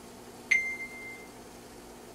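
A tap on a smartphone stopwatch app followed by a single clear electronic beep, about half a second in and lasting under a second, as the brewing timer starts.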